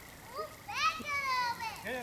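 A child's high-pitched shout, one drawn-out call about a second long that falls slightly in pitch, starting just under a second in.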